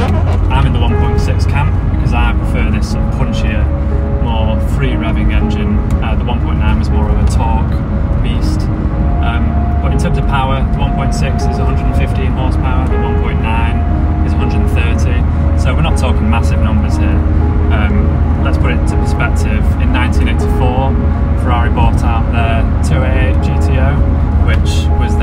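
Peugeot 205 GTi 1.6's four-cylinder engine and road noise droning steadily inside the cabin while driving, under background music.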